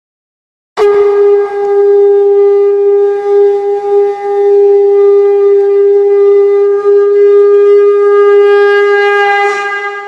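A conch shell (shankh) blown in one long, steady, loud note that starts suddenly about a second in and begins to fade near the end, sounded at the close of the aarti.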